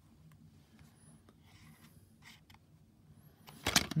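Faint handling noise from a hand holding and shifting a plastic DVD case: soft scrapes and small ticks in a quiet small room, then a brief louder rustle near the end.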